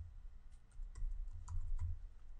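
Computer keyboard typing: about half a dozen separate keystrokes spread over two seconds, fairly faint.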